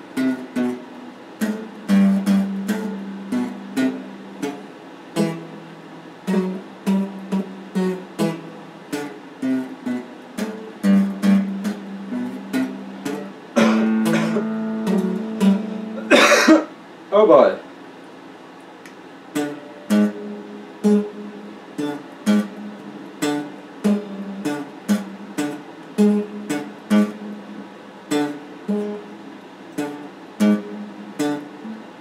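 Electric guitar played with a clean tone, single plucked notes and short phrases at a slow, uneven pace. About fourteen seconds in a chord is held, followed by a loud, wavering, pitch-bending sound, after which the plucking resumes.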